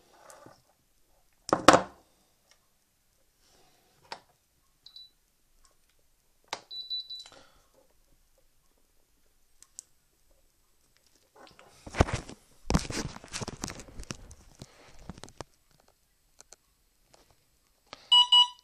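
Clicks, knocks and a longer clatter of handling as a LiPo battery lead and connectors are unplugged and plugged back in, with two short high-pitched beeps about five and seven seconds in.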